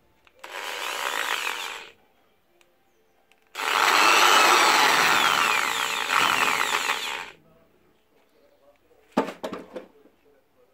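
Electric drill with a thin steel axle pin in its chuck, running in two bursts, the second longer and louder, its motor whine gliding in pitch. A few sharp knocks follow near the end.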